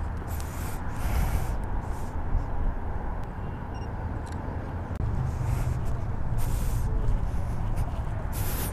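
Wind rumbling on the microphone, with traffic noise from the road beyond.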